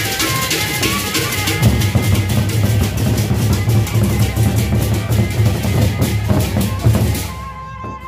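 Gendang beleq ensemble playing on the move: large Sasak barrel drums beating under rapid, dense cymbal clashing, the drumming growing heavier after a couple of seconds. About seven seconds in the cymbals cut off suddenly and the sound drops back to lighter drumming and sustained ringing tones.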